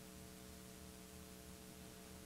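Near silence: a faint, steady electrical hum with hiss underneath.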